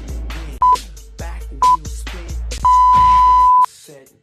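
Workout interval timer beeping over hip-hop music: two short beeps about a second apart, then one long beep of about a second. The pattern is a countdown marking the end of a 20-second work interval, and the music stops with the long beep.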